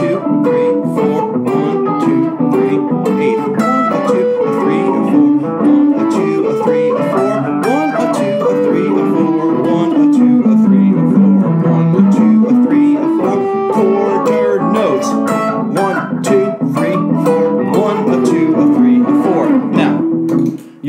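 Telecaster-style electric guitar playing a bluesy single-note solo line in steady rhythm, first on the beat and then in swung eighth notes. In the middle the notes walk down the scale and climb back up.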